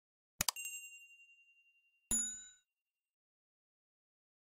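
Subscribe-animation sound effects: a quick double click, then a ringing ding that fades over about a second and a half, followed about two seconds in by a second, shorter bell-like ding.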